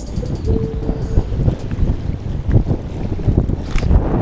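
Strong wind buffeting the microphone in uneven gusts, with choppy water in the background.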